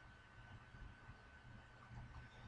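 Near silence: faint room tone with a low hum and a thin steady high tone.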